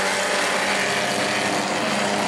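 Several short-track stock cars' engines running at race speed together. They make a steady, dense drone of overlapping engine notes.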